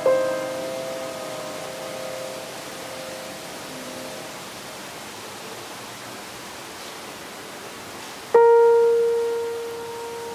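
Piano accompaniment: a chord struck and left to ring, fading away over about four seconds, then a pause with steady hiss, and a second chord struck sharply about eight seconds in, decaying slowly.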